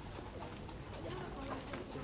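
Boys' voices chatting at a table, with a bird calling in the background.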